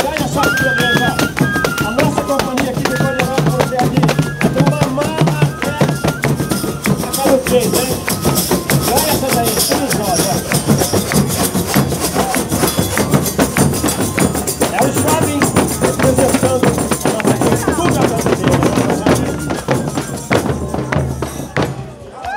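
Folia de Reis procession band playing: bass drums and a hand-held frame drum beating a steady rhythm with tambourine jingles, a transverse flute carrying the melody for the first couple of seconds, and voices singing. The music dies away near the end.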